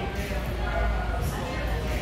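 Indistinct background voices in a busy indoor public space, over a steady low hum.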